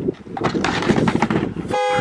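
Skateboard wheels rolling down a quarter-pipe ramp with knocks as the rider falls onto the ramp, ending about two seconds in with a short horn blast.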